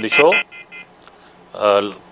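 Two short electronic beeps from a telephone line as a live caller is put through, after the end of a man's speech. A voice starts again near the end.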